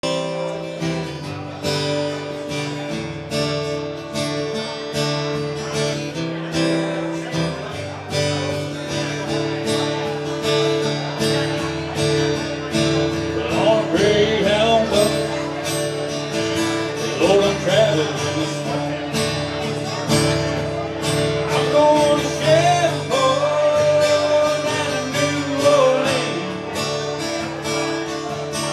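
A steel-string acoustic guitar is strummed in a steady rhythm as the opening of a country song, before the vocals come in. A wavering melody line joins over the strumming from about halfway through.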